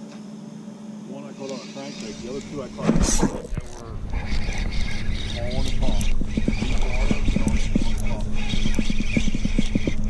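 A loud sudden whoosh about three seconds in, then a spinning reel being cranked, with quick irregular clicks over low wind rumble on the microphone and a steady low hum.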